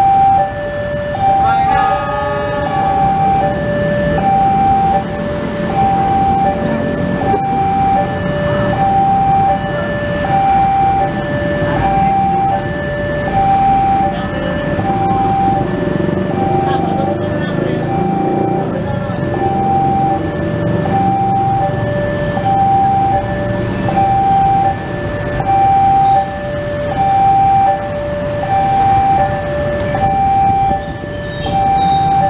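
An electronic warning alarm sounding a steady two-tone ding-dong, high and low notes alternating evenly, typical of a railway level-crossing signal. Beneath it runs the low rumble of a diesel locomotive's engine, heaviest in the middle as the locomotive rolls slowly in.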